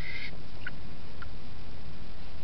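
Felt-tip marker squeaking as it is drawn across a scrap microwave transformer, the squeak stopping about a quarter second in. Two faint ticks follow over a steady low background noise.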